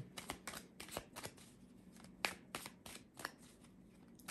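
Tarot deck being shuffled by hand: a quick run of card snaps and riffles for about the first second, then a few scattered single card flicks.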